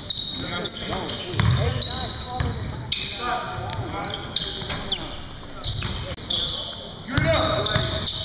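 Basketball game in a gym: the ball bouncing on the hardwood floor at intervals, with players' voices calling out and echoing in the large hall.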